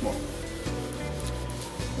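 A cloth rubbing over the inside of a hot, flaxseed-oiled cast iron skillet as the oil is wiped around during seasoning, over steady background music.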